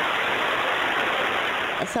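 Steady rushing of a torrent of muddy storm runoff pouring down a hillside, heard through a phone recording with a dulled, muffled top end. It cuts off suddenly near the end as a woman begins to speak.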